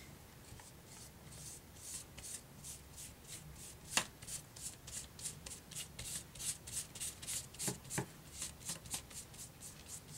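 Flat paintbrush scrubbing gesso onto a paper manila envelope: faint, quick brush strokes, about three a second, with two sharp clicks about four and eight seconds in.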